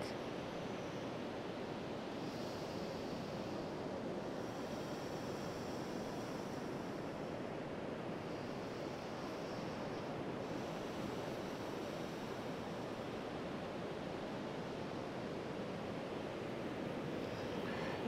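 Steady wash of sea surf breaking on a sandy beach, an even, unbroken rush.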